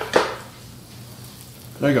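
A short knock as the flipped electric waffle iron meets the plate and the stuffing waffle drops out, then a faint, steady sizzle from the hot waffle iron.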